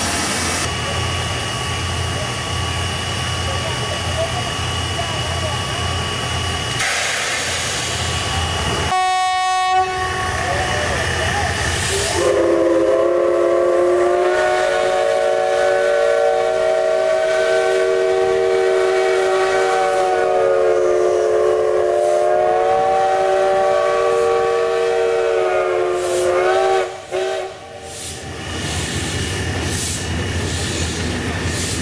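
Hitachi-built 1935 JNR Class C56 steam locomotive running past with a steady rumble. After a short break, its steam whistle blows one long note of several tones sounding together for about fifteen seconds, wavering slightly near the end before it stops.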